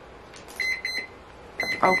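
A wake-up alarm beeping: short, high electronic beeps in quick groups of three or four, a group about once a second.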